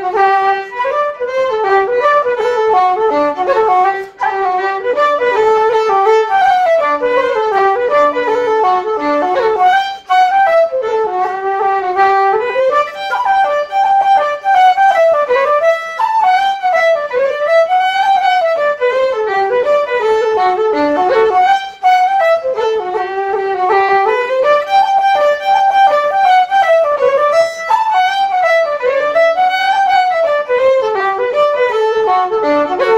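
Fiddle and wooden flute playing an Irish hornpipe together, a continuous run of quick melody notes.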